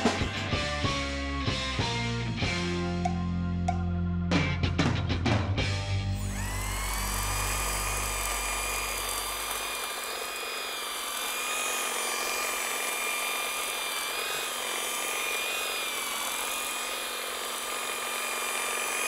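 Rock music for the first six seconds or so, its bass fading out a few seconds later. From there, the EGO Power+ HT6500E cordless hedge trimmer's electric motor and reciprocating blades run with a steady high whine that wavers slightly as it cuts.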